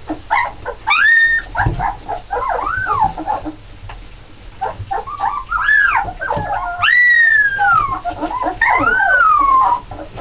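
A litter of 17-day-old Alaskan Malamute puppies whining and squealing, many high cries overlapping, each rising and falling in pitch. The longest ones fall away over about a second in the second half.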